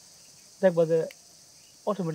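A man's voice speaking two short phrases, over a steady high-pitched hiss.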